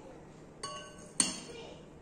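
Two sharp clinks of hard objects about half a second apart, each with a short bright ringing, the second louder.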